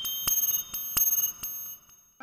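A quick run of bright, high-pitched metallic strikes, like small bells or chimes, each ringing on briefly and dying away near the end.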